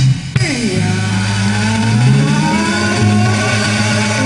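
Live band playing on stage: the drums drop out just after the start, leaving long held bass notes and sustained chords, with a falling slide early on and a slowly rising held note.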